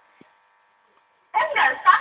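Thai speech played back from a computer. It starts abruptly and loud about a second into the clip, after a near-silent pause with only a faint steady tone.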